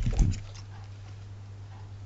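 A few short low thuds in the first half-second, as the card frames are handled on the table. Then only a steady low electrical hum.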